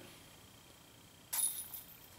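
A putted disc striking the chains of a Prodigy disc golf basket: one short metallic jingle about a second and a third in, fading within half a second. It marks the putt going in.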